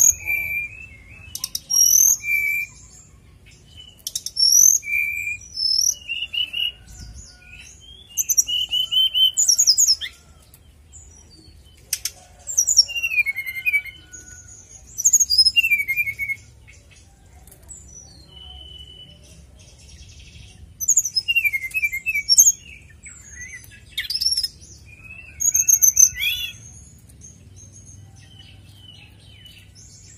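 A caged srdc (sridhucu) songbird singing in bursts of quick, high chirps, twitters and short whistles, with pauses of a few seconds between phrases. This is the relaxed, free song that keepers play as lure song to set other srdc singing.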